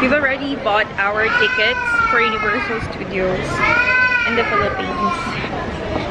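A high-pitched voice vocalising in a drawn-out, sing-song way, with long held notes that rise and fall, about a second each.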